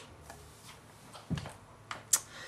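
A plastic craft paper punch set down on a sheet of paper: quiet handling, with a soft knock about a second and a half in and a small click near the end.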